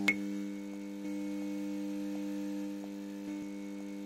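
Neon-sign buzz sound effect: a steady electrical hum with a sharp click as the sign switches on, then a few faint ticks.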